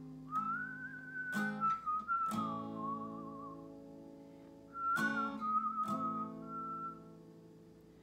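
A whistled melody in two wavering phrases over an acoustic guitar, its chords struck about once a second and left to ring.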